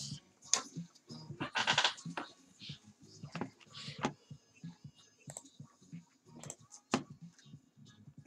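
Scattered light clicks and taps, irregular, like a computer mouse and keyboard being used. There is a brief voice a little under two seconds in.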